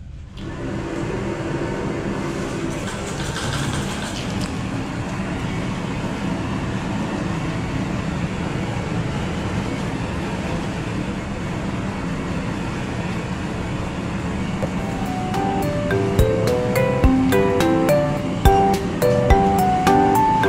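Background music that starts abruptly as a steady, dense sound; a melody of distinct notes with a regular ticking beat comes in about fifteen seconds in and grows louder.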